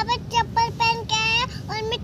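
A young girl singing in a high, nearly level-pitched voice: a run of short syllables with one longer held note about a second in.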